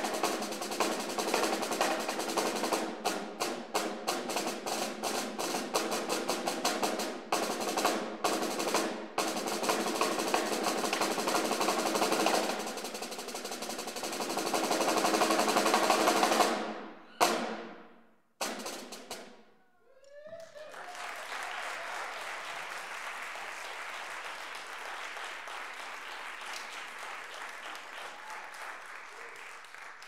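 Snare drum solo: quick strokes and rolls, building into a roll that grows louder and cuts off about seventeen seconds in, followed by a few sharp final strokes. Then steady audience applause.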